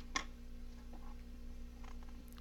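A couple of light clicks from small metal hand tools (tweezers and pliers) being handled over a cutting mat near the start, then a few faint handling ticks, over a steady low hum.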